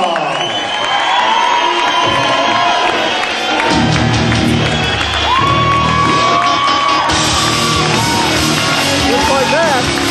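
Wrestler's victory theme music playing over the hall's sound system, with a sung melody; a heavy bass and beat come in about four seconds in. Crowd whoops and shouts are heard under the music.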